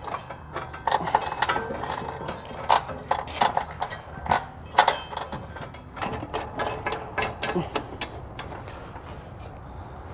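Carriage bolts and hitch hardware clicking and rattling against the steel frame rail and hitch flange as they are worked into place by hand: irregular metallic clicks, busier early and thinning out near the end.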